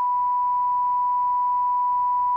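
Steady broadcast line-up test tone: a single unbroken pure pitch at constant level.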